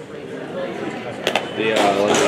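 Indistinct voices of people talking in a large gym hall, with a couple of sharp clicks about a second in.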